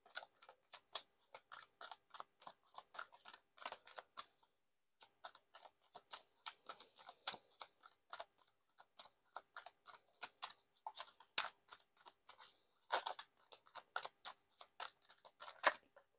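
A deck of tarot cards being shuffled by hand: a rapid, irregular run of card clicks and slaps, broken by a short pause about five seconds in, with a few louder snaps toward the end.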